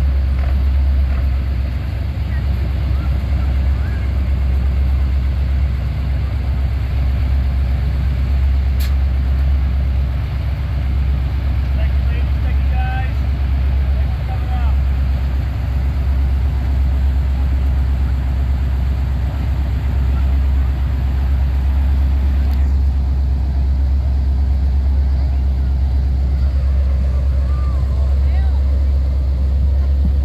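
Big ride truck's engine running with a steady low rumble.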